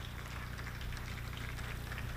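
Audience applauding, heard faintly as a steady patter of many claps, over a low steady hum.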